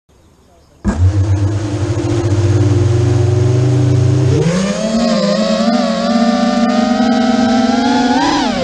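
Brushless motors of a QAV210 racing quadcopter (EMAX 2600kV motors) start spinning suddenly about a second in and hum steadily at idle, heard from the quad's onboard camera. About four seconds in, the whine steps up in pitch and keeps climbing slowly as the throttle rises for takeoff.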